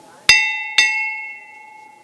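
Silver bell on the front of a procession throne struck twice, about half a second apart, each strike ringing on and fading: the signal to the throne bearers to lift.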